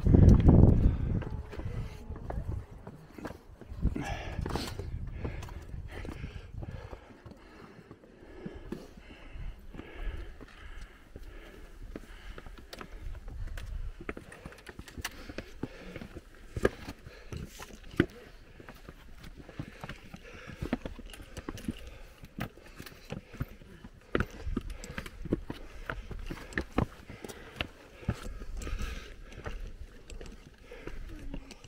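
Hiking footsteps scuffing and tapping on sandstone rock during a slow uphill climb, a string of short irregular clicks, with a gust of wind on the microphone at the start. Faint voices of other hikers come and go in the background.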